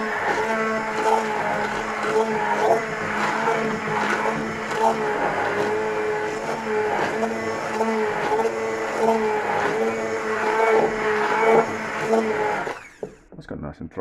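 Braun hand-held stick blender running in a saucepan of soup, pureeing it with a steady motor hum whose pitch wavers slightly as it works. It cuts off about a second before the end.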